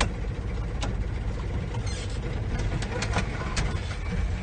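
Engine and road noise inside the cab of a small old vehicle driving slowly on a dirt track: a steady low rumble with a few sharp clicks, one about a second in and three more near the end.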